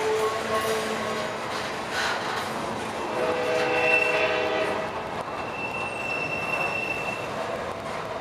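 Double-stack intermodal freight train's well cars rolling past with a continuous wheel-on-rail rumble. Held squealing tones from the wheels come and go over it, a thin high squeal about four seconds in and again near the end.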